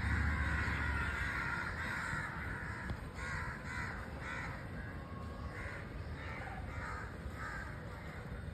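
A flock of crows cawing: a dense, overlapping chorus at first, then separate caws in quick succession, about two a second, from about three seconds in.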